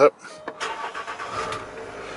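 Land Rover Discovery's 3.0-litre SDV6 diesel V6 starting, heard from inside the cabin: it fires about half a second in and settles into a steady idle.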